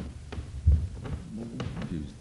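Low thumps and rumble of a handheld microphone being moved in the hand, the strongest about two-thirds of a second in, over a low hum, with a few clicks and faint murmured voices.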